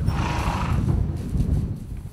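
A horse's short, breathy call, just under a second long near the start, over a steady low rumble.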